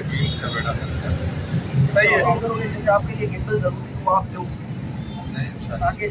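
Men talking in short, broken phrases over a steady low rumble.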